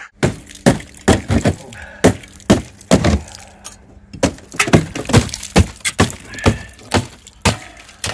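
A hammer striking and chipping away cracked exterior wall render, its mesh and frozen insulation: about twenty sharp, irregular knocks with the crack of pieces breaking off.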